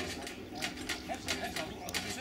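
Indistinct voices in the background with a series of short, sharp clicks and knocks, about two or three a second.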